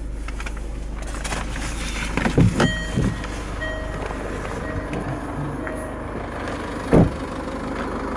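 Land Rover Freelander TD4's 2.2 diesel idling steadily. The driver's door opens with clicks and knocks about two and a half seconds in, a few short electronic warning chimes sound, and the door shuts with a sharp thud about seven seconds in.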